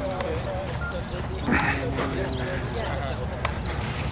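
Hooves of thoroughbred racehorses walking on a dirt track, a run of uneven clip-clops, with people talking in the background.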